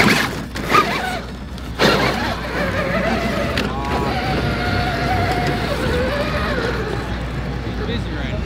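Indistinct voices of people talking nearby, over steady outdoor background noise, with a few sharp knocks in the first two seconds.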